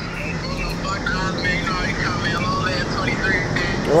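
Faint background voices over steady outdoor street noise with a low, even hum.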